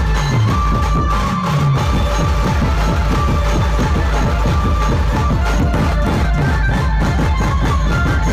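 Loud dhumal band music: an electronic drum pad struck with sticks and an electronic keyboard, over heavy bass.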